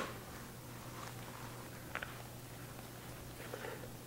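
Faint kitchen handling sounds over a steady low hum: a single light tap about halfway through, then a soft rustle near the end as risen bread dough is lifted out of a plastic mixing bowl.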